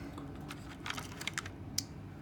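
A few light, irregular clicks and taps from a small die-cast toy car being handled and turned between the fingers.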